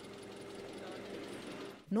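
A steady low mechanical hum with a faint, fast, even ticking over it. A voice starts just at the end.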